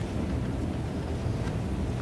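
Steady low rumble of room noise, a pause with no speech.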